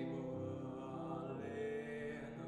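A boy's solo voice singing over grand piano accompaniment, the voice coming in at the start with held notes.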